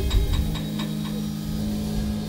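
Small jazz band playing the last bars of a song: a low chord is held while the drummer plays a quick run of about six drum and cymbal hits in the first second.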